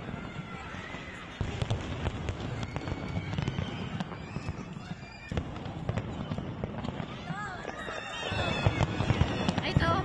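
Fireworks display: aerial shells bursting in a continuous run of deep booms and sharp cracks, getting louder near the end.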